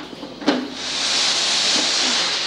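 Laundry steam press: a clunk about half a second in, then a steady hiss of steam that builds up and keeps on.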